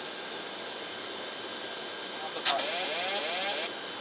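Steady airflow hiss on a Boeing 747SP flight deck during approach. About two and a half seconds in, a sharp click opens a brief, garbled radio transmission over the cockpit audio, which lasts about a second and cuts off abruptly.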